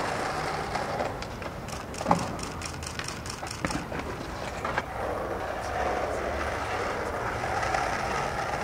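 Skateboard wheels rolling on street asphalt with a steady rumble, over the noise of passing traffic. There is a sharp clack from the board about two seconds in, and a few lighter clicks follow.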